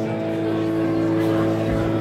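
Live punk rock band with a distorted electric guitar chord held and ringing in a pause between sung lines.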